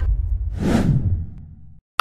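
A swelling whoosh sound effect about half a second in, over a bass-heavy music bed that fades away to silence just before the end.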